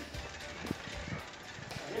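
Faint outdoor hiss with a few soft knocks and rattles from a bicycle being ridden slowly over concrete.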